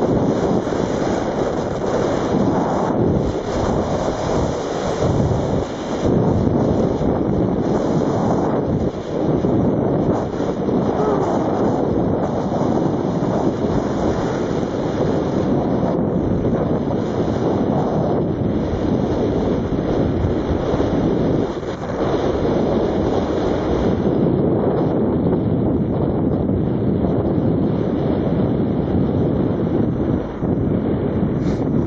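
Wind rushing over the microphone of a camera carried by a skier moving downhill: a steady, loud rushing noise with only brief dips.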